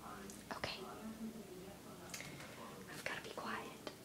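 A girl whispering quietly, a few faint hushed words that the transcript does not catch.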